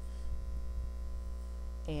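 Steady low electrical hum, with a voice starting just at the end.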